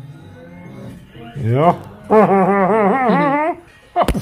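A man's wordless vocalising: a rising call about a second and a half in, then a long warbling note whose pitch wobbles up and down several times a second.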